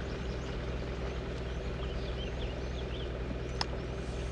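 A vehicle's engine running low and steady as it rolls slowly over gravel, under the steady rush of a small stream's running water. A few faint high bird chirps come through in the middle, with a single click near the end.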